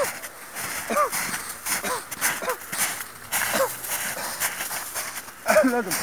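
Footsteps crunching through snow, with short, single rising-and-falling voice-like calls about every second over them. A man starts talking near the end.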